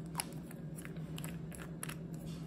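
Several small clicks and scrapes as the plastic brush cap is put back into the neck of a glass nail polish bottle and screwed on, over a steady low hum.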